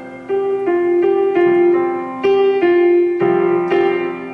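Electronic keyboard on a piano voice playing a held C suspended-four chord in a new voicing, with single notes struck over it about every half second. The notes ring on and fade near the end.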